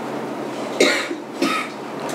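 A person coughs twice, about a second in and again half a second later, over a steady background hiss.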